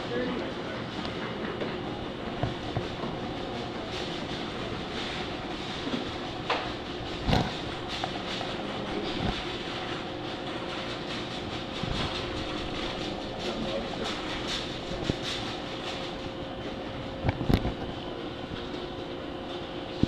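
Steady indoor mechanical hum with a background murmur of voices, broken by scattered knocks and clicks, the loudest about seven seconds in and again near the end.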